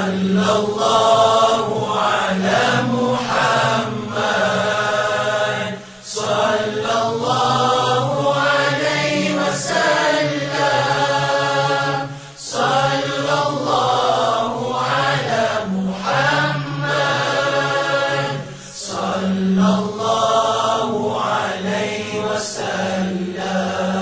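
Selawat, blessings on the Prophet Muhammad, chanted in Arabic in slow, drawn-out melodic phrases of about six seconds each, with short breaks between them.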